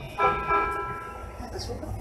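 A single bell-like chime in the train's driver's cab, struck about a quarter second in and ringing for just over a second as it fades, as the train prepares to restart.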